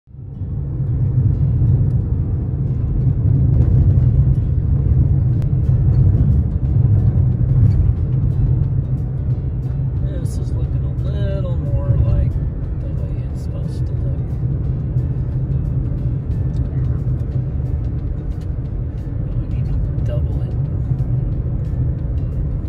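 Steady low rumble of a car driving, tyre and engine noise heard from inside the cabin. A brief snatch of voice or music comes through about ten to twelve seconds in.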